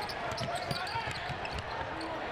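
Basketball being dribbled on a hardwood court over the steady murmur of an arena crowd.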